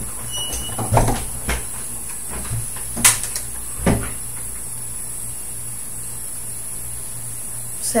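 A few light knocks and clicks of handling as a headband is fitted into the hair, the sharpest about three seconds in, over a steady low hum and hiss.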